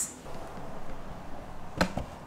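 Quiet room tone with one short, sharp knock near the end.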